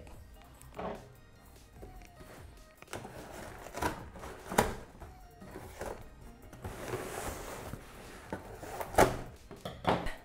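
Cardboard shipping box being cut open and its flaps pulled back: scraping and rustling of cardboard and packing tape, with a few sharp knocks on the box and table, the loudest near the end.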